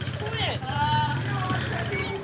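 Small motorcycle engine idling with a steady low hum. A faint voice is heard in the background.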